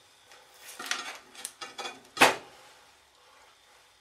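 Hard objects clattering and knocking as they are picked up and handled on a workbench, a run of small rattles ending in one sharp knock about two seconds in.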